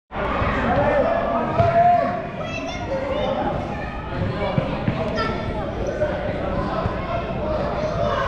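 Soccer balls being kicked and bouncing off a hardwood gym floor, with young children's voices calling out, all echoing in a large gymnasium.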